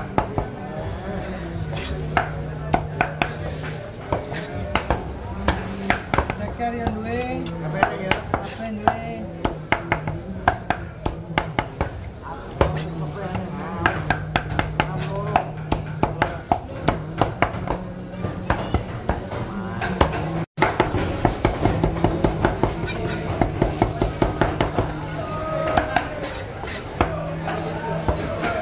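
Large knife chopping through raw chicken into a thick round wooden chopping block: a fast, uneven run of sharp knocks, many a second, as the whole chicken is cut into pieces. Background music plays under the chopping.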